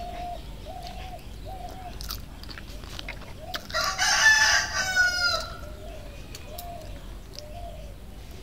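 A rooster crowing once, about four seconds in: a loud call that ends in a falling tail. A chicken keeps up a steady run of short clucks, about two a second.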